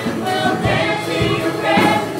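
Gospel choir singing with instrumental backing, with low beats recurring underneath.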